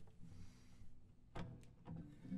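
Quiet handling of an acoustic guitar and its capo, with a short sharp click about one and a half seconds in and a weaker one just after, as the capo is taken off the neck.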